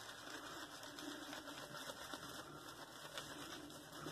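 Faint, steady scratchy swishing of a damp synthetic shaving brush being swirled on a shaving soap to load it with lather.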